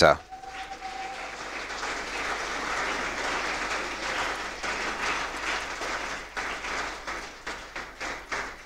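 Audience applauding, building over the first few seconds and tailing off near the end.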